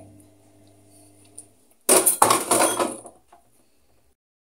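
Kitchenware clattering as dishes are shifted around on a table: a dense burst of knocks and clinks starting about two seconds in and lasting about a second.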